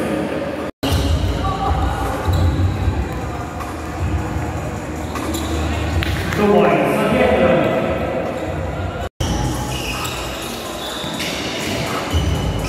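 Indoor basketball game: a ball bouncing on the hardwood court amid shouting voices, echoing in a large gym. The sound cuts out briefly twice, about a second in and near the end.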